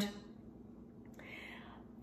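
A pause in a woman's talk: low room tone, then a soft breath in lasting about half a second, a little over a second in.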